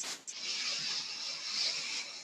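A woman's long, deep inhale: a steady airy hiss lasting about two seconds as she fills her lungs to the top before a breath hold.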